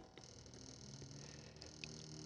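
Near silence: a faint steady low hum of room tone, with a faint tick near the end.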